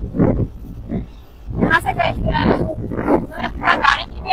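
A person's voice, talking or calling out over a steady low rumble of wind and motorcycle noise from riding on a bike; the voice starts about a second and a half in.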